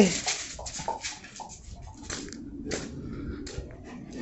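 Faint, scattered clicks and scuffs as a large dog walks about on a concrete patio.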